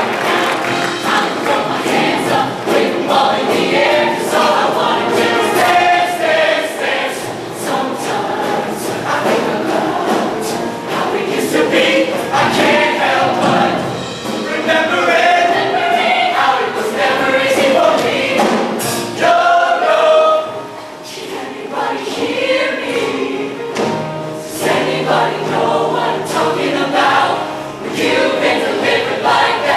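Large show choir of mixed male and female voices singing together over accompaniment with a steady beat.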